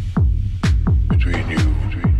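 Techno played loud from a DJ set: a four-on-the-floor kick drum, a thud falling in pitch about twice a second, over a steady bass line. About halfway through, a busier synth texture with a few held notes comes in between the kicks.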